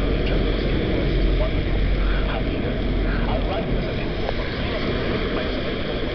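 Steady wind noise on the microphone while moving along a roadside, mixed with the tyre hiss and engines of cars passing on a wet road.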